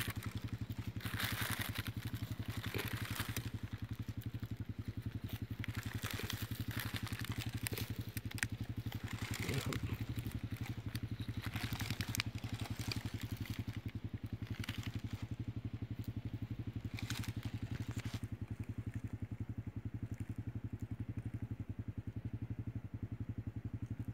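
A small engine idling steadily with a fast, even pulse, with occasional crackles of dry leaves being handled.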